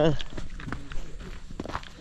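Footsteps walking on a loose gravel and dirt trail, a steady walking pace of single steps.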